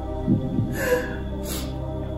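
Slow background music with a low, steady pulse, with a couple of short breathy vocal sounds from a man over it, the first about a third of a second in and another around one second in.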